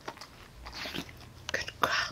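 German shepherd crunching and chewing a treat, a few crisp crunches with the loudest near the end.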